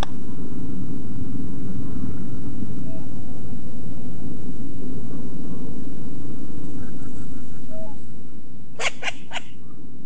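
Field recording of a short-eared owl: a loud, steady low rumble of background noise with a few faint short calls. Near the end comes a quick run of four sharp snaps, in keeping with the species' barking calls and wing claps.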